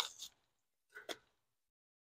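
Mostly near silence, with two faint, very short crinkles about a second in as a paper packet of ranch seasoning is picked up.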